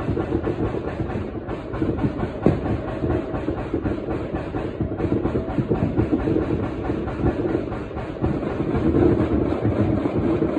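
Dense, unbroken barrage of fireworks and firecrackers popping and crackling across the neighbourhood, with heavier bangs mixed in and one sharper bang about two and a half seconds in.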